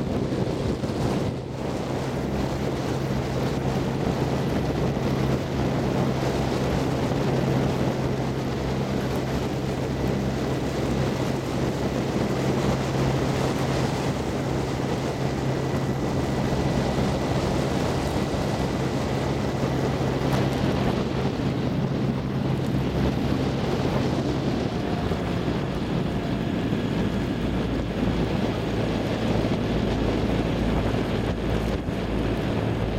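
Coaching launch's outboard motor running steadily with a low hum that drops lower about three quarters of the way through, under wind buffeting the microphone and water noise.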